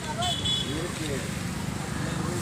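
Auto rickshaw running with a steady low engine rumble, heard from inside its open passenger compartment while a voice sounds over it.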